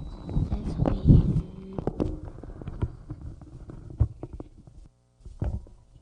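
Irregular knocks, bumps and footsteps on a wooden stage, loudest about a second in and thinning out, with one more thump near the end: the stage being reset between scenes.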